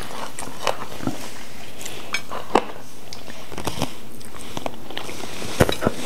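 Eating at a table: a spoon clicking and scraping lightly against a bowl and plates, with soft chewing, a few scattered clicks over steady room noise.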